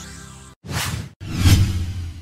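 Logo-sting sound effects: a held low musical tone fades out, then two whooshes follow. The second whoosh is louder and swells into a deep hit about a second and a half in.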